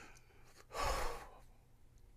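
A crying man lets out one heavy, breathy sigh about a second in.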